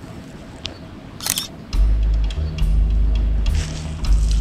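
A smartphone camera shutter clicks a little over a second in, then background music with a heavy, steady bass line and a light beat comes in just before the two-second mark and is the loudest thing.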